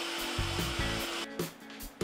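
Shop vacuum running steadily as dust extraction for a track saw, with quiet background music under it. The vacuum noise cuts off abruptly about a second and a half in.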